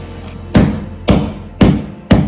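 Fresh ginger root being pounded on a wooden cutting board: sharp blows about twice a second, starting about half a second in, over background music.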